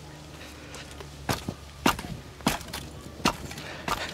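A steel spade is kicked into packed soil and levered back. About five sharp scrapes and clicks come as the blade cuts through the dirt and grit.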